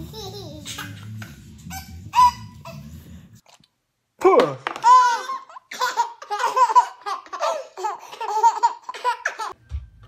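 Two babies laughing together in repeated bursts of belly laughter, starting about four seconds in. Before that, a baby's short squeals over a low hum.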